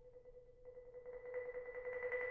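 Concert marimba holding a single note as a soft roll of rapid mallet strokes, growing steadily louder.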